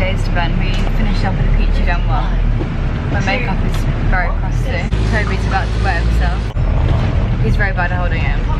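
Bus engine and road rumble heard from inside the moving bus's cabin, a steady low drone that swells slightly about five seconds in, with voices talking over it.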